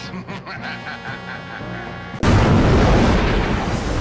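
Music, then about two seconds in a sudden cut to a loud, rushing fighter-jet engine noise, deep and dense.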